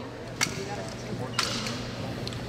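Two sharp knocks about a second apart as a solo exhibition drill performer moves off with his drill rifle, over faint murmuring voices.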